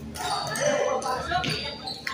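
Badminton rally: a few sharp hits of racket on shuttlecock, with indistinct voices.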